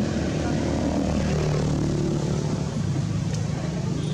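A steady, low engine drone.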